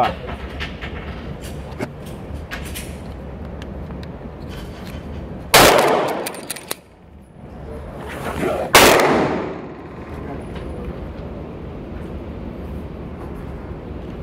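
Two shots from a Taurus PT111 G2 9mm pistol, about three seconds apart, each sudden and loud with a short ringing tail.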